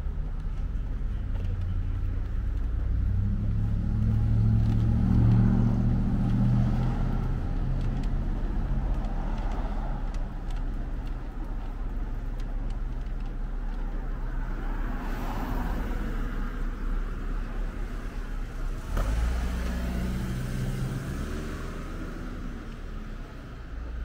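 Road traffic: motor vehicles passing on a street, the loudest going by about five seconds in, with more cars passing later.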